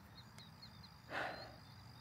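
Crickets chirping faintly in a steady run of short, high chirps, with a short breath-like rush about a second in.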